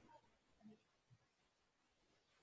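Near silence: faint room tone, with a couple of barely audible brief blips.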